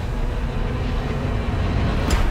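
A low, steady rumbling drone with faint held tones above it: dark trailer sound design.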